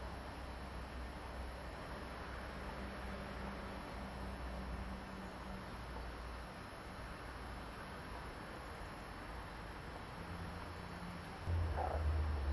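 Quiet, steady outdoor background noise with a faint low hum and no distinct events. A louder low rumble comes in near the end.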